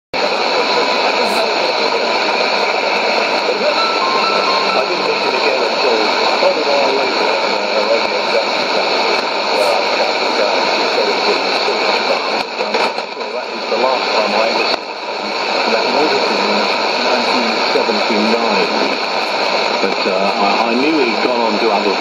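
Shortwave AM broadcast on 6160 kHz through a Sony ICF-2001D receiver's speaker: a voice half-buried in steady static and hiss. The signal dips briefly twice around the middle.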